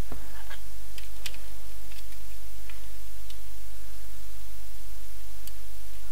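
A few faint, scattered clicks and taps of injection-moulded plastic model-kit parts, the fuselage halves of a 1/72 MiG-25 kit, being handled and pressed together in a test fit. A steady low hum runs underneath.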